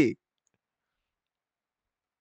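Dead silence, after a man's voice cuts off right at the start.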